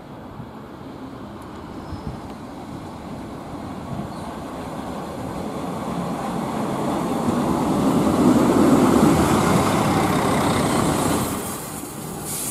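Czech Railways Class 814/914 Regionova diesel railcar arriving at a halt. Its running and wheel noise grows steadily louder as it pulls alongside, peaks a few seconds before the end, then drops off sharply as it slows to a stop.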